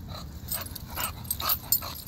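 A dog right beside the microphone making short, irregular breathy sounds with light clinks, about six in under two seconds.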